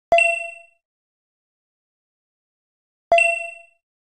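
Two text-message notification chimes, one right at the start and one about three seconds later, each a short bright ding that rings out within about half a second.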